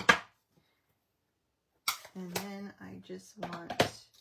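A short, sharp knock right at the start, as clear acrylic stamp blocks are handled on the craft desk. Then a woman's voice speaks softly for about two seconds in the second half.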